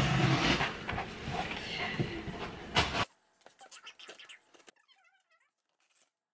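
Box cutter slicing through packing tape and cardboard on a shipping box: a scraping, rustling rasp with a sharp click near the end, lasting about three seconds before it cuts off suddenly.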